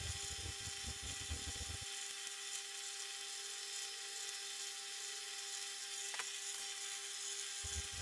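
Faint steady hum with a constant hiss, and a single light click about six seconds in.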